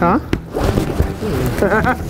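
Men talking, with one sharp click about a third of a second in.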